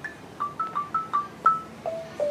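Wooden-barred box xylophone played with soft yarn mallets: a quick run of about eight single struck notes, each ringing briefly. The notes step around in the upper range, with a lower note near the end.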